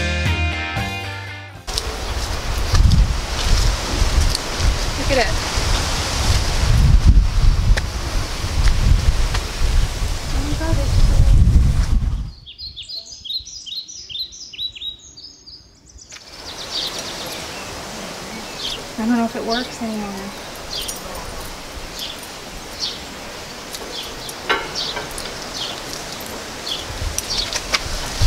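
Music ends about a second and a half in, giving way to wind buffeting the microphone for about ten seconds. After a sudden cut, a small bird chirps repeatedly for a few seconds, then comes outdoor ambience with faint voices and scattered clicks.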